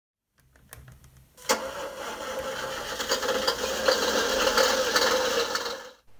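A truck engine starting: a few faint clicks of cranking, then the engine catches with a sudden loud start about one and a half seconds in and runs with a rough, knocking beat before fading out near the end.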